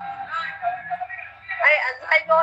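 A person singing, with a few held notes and then quicker sung phrases near the end, over a faint low buzz.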